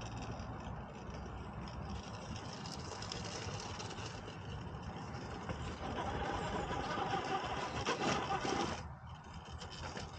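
Electric motor and gear drivetrain of an Axial SCX10 Pro RC rock crawler whining under load as it climbs a boulder face. It gets louder from about six seconds in and cuts off suddenly about nine seconds in.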